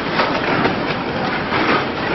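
Biscuit packing machine running, a steady loud mechanical clatter with a faint beat about twice a second as packs pass through.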